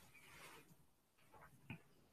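Near silence: faint rustling of fingers and beading thread being drawn through a beaded bead, with a small click near the end.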